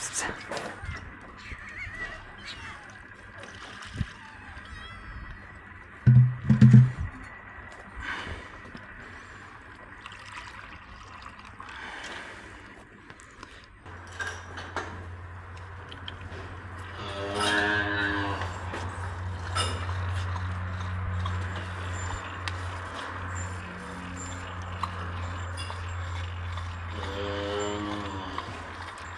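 A calf bawling: two long calls, one in the second half and one near the end, over a steady low hum. A brief loud low sound comes twice about six seconds in.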